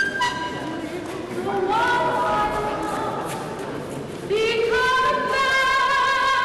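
A woman singing a free jazz opera vocal line, with long held notes that slide between pitches. It grows louder and fuller about four seconds in.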